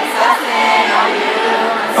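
Live concert music echoing through an arena: a male singer performing over the backing track, with the crowd singing along, recorded loud from the floor.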